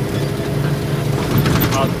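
Steady low hum of a moving vehicle's engine and drivetrain, heard from inside the cabin while driving.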